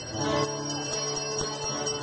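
Small bells jingling and ringing continuously, over music with sustained pitched notes underneath.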